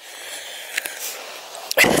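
A woman breathing hard, one long breath of about a second and a half, out of breath from climbing a steep uphill path.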